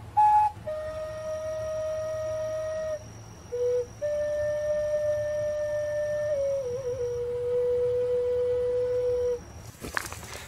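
Intro music: a slow flute melody of a few long held notes, the last one lower and wavering as it starts, which stops shortly before the end.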